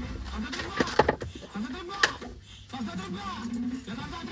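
A man's voice, low and indistinct, with a few sharp clicks or knocks in between.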